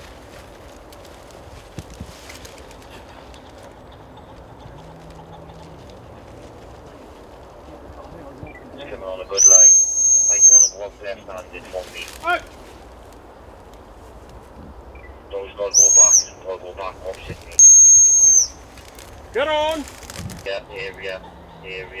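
A gundog whistle blown in three steady, high-pitched blasts, the handler's whistle commands to a Labrador retriever hunting out in the field: a blast of about a second, a shorter one, then another of about a second. Quiet voices are heard between the blasts.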